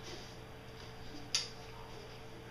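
Faint rustling of a thin plastic wrapping sheet as a DSLR camera body is slid out of it and lifted from its cardboard box, with one sharp click a little past halfway.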